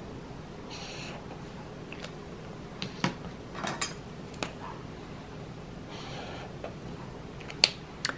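Highlighter tips drawing short strokes across planner paper, a faint scratching, with several sharp clicks of highlighter caps coming off and going on and markers being set down on a hard tabletop.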